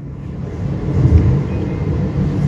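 A fairly loud low rumble with a fainter hiss above it.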